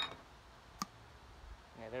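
Sharp clicks of a multi-piece fly rod's sections being pulled apart at the joints and handled: a short clatter at the very start and a single click a little under a second in.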